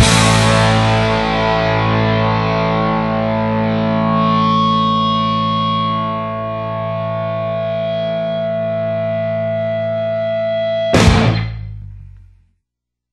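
A rock band's closing distorted electric guitar chord ringing out over a cymbal wash after a loud full-band hit, with one note holding steady. About eleven seconds in, one last crashing hit dies away quickly as the song ends.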